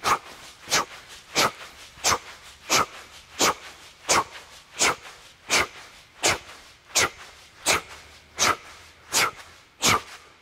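Short, sharp, forceful exhalations, one with each rep of a clubbell strike, a steady rhythm of about three breaths every two seconds, fifteen in all.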